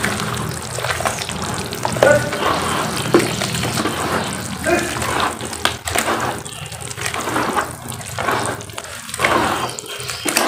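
Hands squeezing and kneading wet cement slurry in a basin, with a continuous irregular squelching and sloshing broken by small wet pops.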